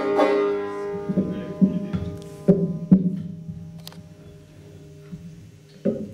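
Banjo being plucked: a handful of notes and chords that ring out and fade, about five in the first three seconds, then a single one near the end.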